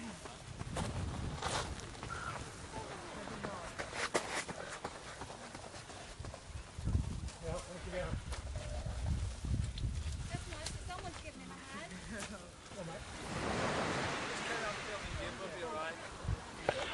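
Faint, distant voices over a low rumble of wind on the microphone, with a few brief knocks and rustles.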